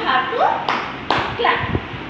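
Two hand claps a fraction of a second apart, between spoken words.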